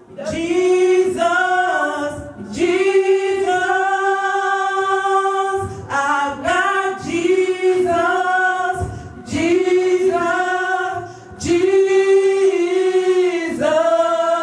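Gospel choir of women singing together into microphones, in long held phrases with short pauses between them.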